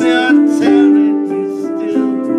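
A man singing a slow song in a rough voice into a close microphone, over an instrumental backing of sustained, held chords.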